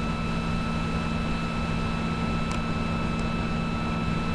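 Steady electrical hum and hiss on the microphone line, with a few faint high whistle tones held throughout: the kind of line noise that makes the voice sound unclear to listeners. Two faint clicks in the second half.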